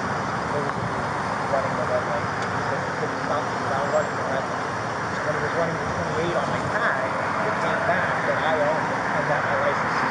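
Steady road traffic noise picked up by a body-worn camera microphone, with faint indistinct voices through it.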